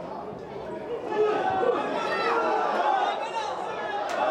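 Overlapping shouts of football players and a sparse crowd of spectators during an attack on goal. The voices grow louder about a second in.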